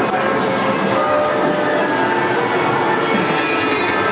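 Dark-ride car running steadily along its track, a continuous mechanical rumble, with the ride's soundtrack music faintly underneath.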